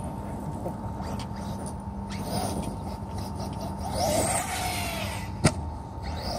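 Arrma Nero electric RC monster truck driving on dirt, its motor whine rising and falling about two-thirds of the way in. A single sharp knock comes near the end.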